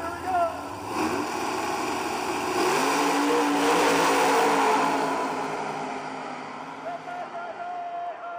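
Two drag-racing cars launching side by side from the start line and accelerating hard away down the strip. The engine noise builds from about a second in, is loudest near the middle as they pass, then fades as they pull away.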